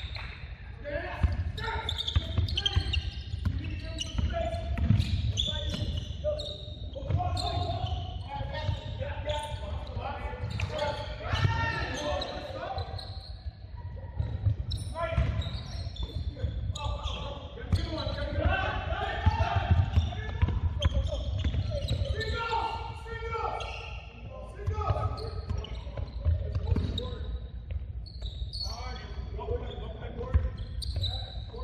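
A basketball game on a hardwood gym court: the ball bouncing repeatedly as it is dribbled, with players' voices calling out, all echoing in the large hall.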